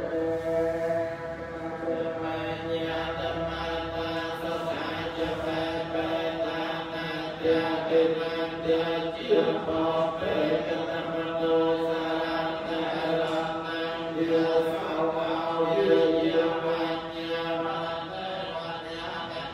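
Group of Theravada Buddhist monks chanting Pali verses in unison: a steady, near-monotone recitation that continues without a break, led by a monk chanting into a microphone.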